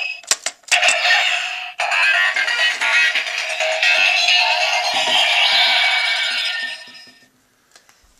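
Kamen Rider Fourze Driver toy belt playing its electronic sound effects: loud synthesized music and tones, with a few clicks near the start, fading out and stopping about seven seconds in.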